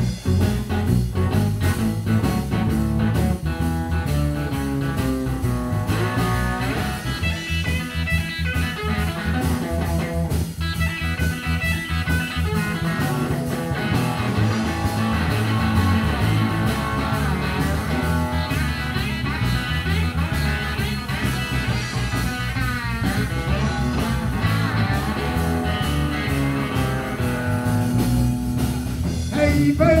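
Live blues band playing an instrumental break: an electric guitar solo with bent notes over a steady bass and drum groove.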